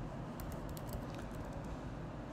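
Typing on a computer keyboard: a few scattered, irregular keystrokes.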